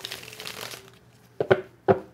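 A deck of tarot cards being shuffled by hand: a soft rustle of cards that dies away in the first second, followed by a few sharp taps in the second half.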